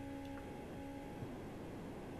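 Quiet room tone through a video-call microphone, with a faint hum that fades out about halfway and a couple of faint ticks.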